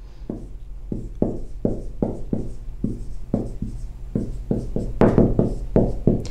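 Dry-erase marker writing on a whiteboard: a quick, uneven run of short squeaks and taps as each letter is stroked out, a little louder about five seconds in.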